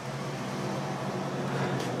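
Steady low hum of an idling vehicle engine, with a faint even background noise and no sudden sounds.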